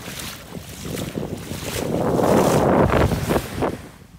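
Shallow surf washing in over sand at the water's edge, swelling to its loudest about two to three seconds in and then easing off, with wind on the microphone.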